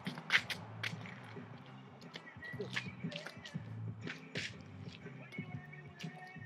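Background music with a repeating low bass pattern and sharp snapping hits that recur irregularly, loudest just after the start and near the middle.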